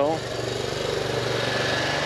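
Riding noise from a fixed-gear track bike on narrow 25 mm tyres rolling over paving: a steady, fast rattling rush.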